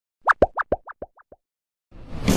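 Cartoon-style popping sound effect of an animated logo sting: about eight quick rising bloops, alternating between a higher and a lower pitch, getting quieter and dying away within about a second.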